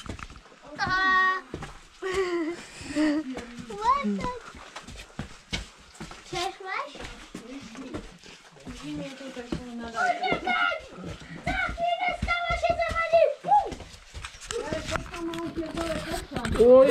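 Voices of a family, mostly high-pitched children's calls and talk, with scattered clicks and scuffs of movement.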